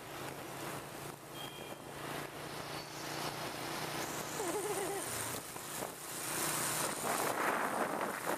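Small motor scooter engine running steadily as it rides along a street, with traffic and tyre noise and wind rushing over the microphone, the wind growing louder over the last few seconds.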